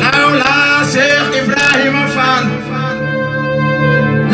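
Amplified male voice singing zikr, a Sufi devotional chant, over a steady electronic keyboard accompaniment. The voice drops out about halfway through while the keyboard keeps holding its chord.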